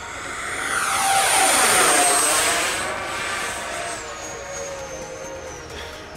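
Twin 64 mm electric ducted fans of a Freewing F-14 Tomcat model jet whining as it passes low. The rush swells to its loudest about two seconds in, then fades away, and the high whine drops in pitch partway through.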